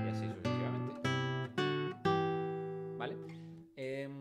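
Nylon-string classical guitar plucking two-note chords a tenth apart, stepping up the G major scale note by note, with each pair left to ring.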